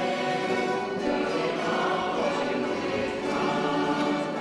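A choir singing a slow church hymn in sustained, held notes.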